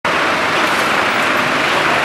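Steady street noise of road traffic.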